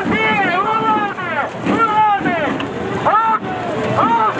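Several people shouting and yelling over one another, loud raised voices with no clear words, in the close press of a crowd riot control drill.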